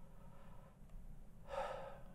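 A person's audible breath close to the microphone: a short, breathy intake or sigh about one and a half seconds in, before speaking.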